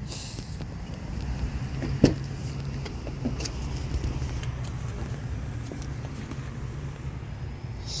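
Steady low hum of a vehicle idling, with one sharp click about two seconds in as an SUV's rear door latch is opened.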